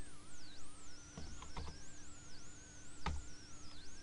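Faint tones that waver up and down in pitch over a steady low hum, with a few soft clicks about a second in and again near three seconds.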